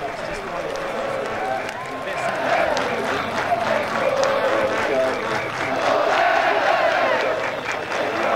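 A crowd of many people talking at once, with scattered applause, growing louder after about two seconds.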